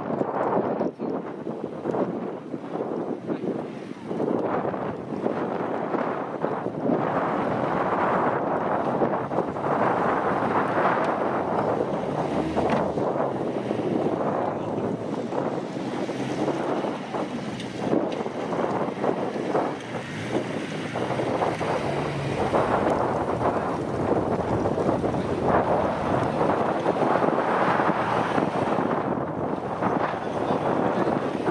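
Wind buffeting the microphone, with a Mazda MX-5's engine running at low revs underneath as the car crawls over rough, rutted grass.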